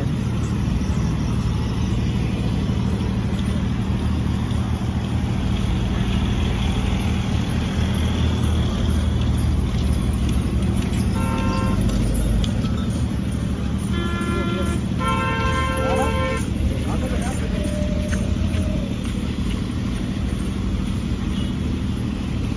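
Steady rumble of road traffic passing close by, with vehicle horns honking three times: a short toot about halfway through, then two more a few seconds later, the last held for about a second.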